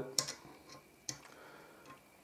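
Multimeter test probe tips tapping against a lateral MOSFET's pins and metal mounting tab, giving a few light, sharp ticks, the sharpest just after the start. The meter stays silent on continuity, with no beep, because the transistor is isolated from the heatsink.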